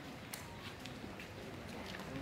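Outdoor ambience of a steady background hum with scattered sharp clicks, about a third of a second in and several more after, and faint distant voices.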